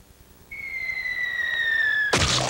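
Cartoon falling-whistle sound effect: after a moment of near silence, a single high whistle glides slowly down in pitch for about a second and a half, then cuts off suddenly, as if just before an impact.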